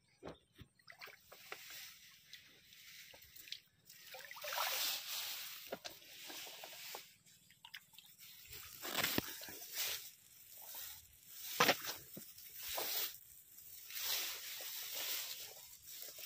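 A hand sloshing and splashing in shallow water among flooded rice plants, groping in the mud for snails. The splashes come irregularly, with a few sharper, louder ones in the second half.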